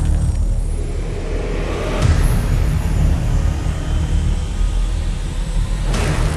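Horror trailer sound design: a loud, steady low rumbling drone, with one sharp hit about two seconds in.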